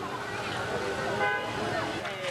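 Outdoor field sound of voices calling, with a brief horn-like toot about a second in.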